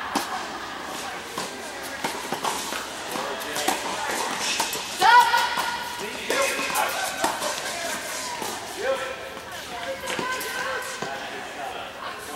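Tennis balls struck by rackets and bouncing on an indoor hard court, sharp pops that echo in a large hall. Indistinct voices of players carry across the courts, and a loud, high pitched sound stands out about five seconds in.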